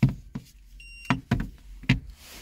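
A handful of sharp knocks and taps, about five in two seconds, as things are handled and bumped, with a short high electronic beep a little under a second in.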